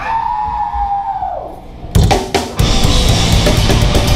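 A held tone bends down in pitch and dies away. About two seconds in come two or three loud hits from the whole band. Then, about two and a half seconds in, the deathcore band starts playing flat out: drum kit at a fast, even rhythm under distorted guitars and bass.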